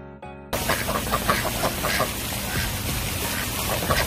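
Domestic ducks quacking repeatedly in short calls over a steady noisy background, cutting in abruptly about half a second in after a brief bit of bright electronic music.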